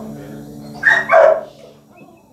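Guitar notes ringing and fading, then a loud, short two-part yelp about a second in.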